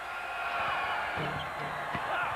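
Basketball arena crowd noise, a steady mass of voices, during a free-throw attempt, with a sharp knock near the end.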